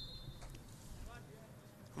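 Quiet open-air ambience at a football pitch with a few faint, distant voices calling about a second in. The tail of the referee's whistle signalling the penalty fades out right at the start.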